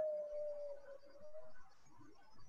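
A person breathing out slowly through the mouth, which makes a soft, steady low tone that dips slightly in pitch and dies away about one and a half seconds in. This is the slow exhale of a guided breathing exercise.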